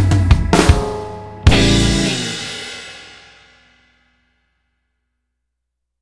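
A band ending a blues song: drum hits and cymbals, then a final accented hit about a second and a half in, after which the last chord rings on and fades away by about four seconds in.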